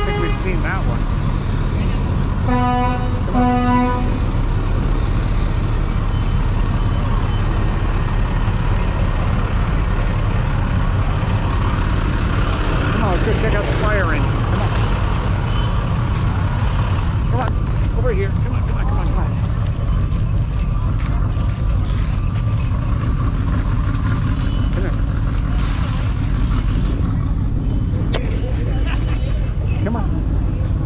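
A vehicle horn gives two short toots, a second or so long each, about two and a half seconds in, over a steady low rumble, with faint voices in the background.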